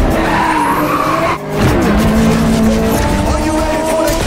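Car engine revving with tyres skidding, broken by a short dip about a second and a half in, then a steady held engine note.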